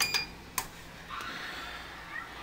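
Oster digital toaster oven's control panel giving a short electronic beep as a button is pressed, followed by a click about half a second later. From about a second in a faint steady hiss sets in as the oven starts cooking.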